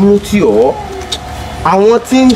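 Speech: a voice talking loudly in short phrases, with a brief pause in the middle.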